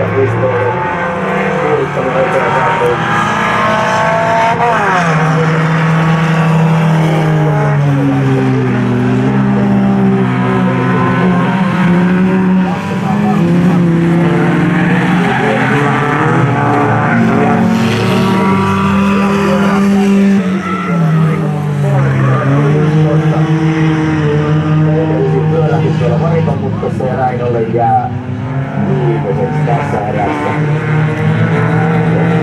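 Several folkrace cars racing on a wet tarmac track, their engines revving hard at different pitches that rise and fall as they accelerate, lift and shift gear, with tyres squealing and skidding through the bends.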